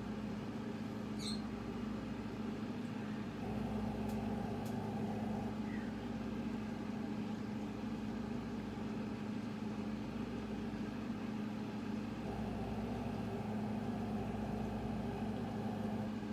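A steady low hum, like a running fan or appliance, with a faint short high chirp about a second in.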